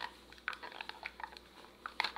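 Faint, scattered plastic clicks from a push-down-and-turn cap on a bottle of gummy vitamins being pressed and twisted, the cap not giving way.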